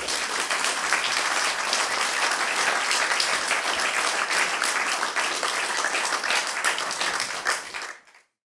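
Audience applauding for a finished song: dense, steady clapping that dies away near the end.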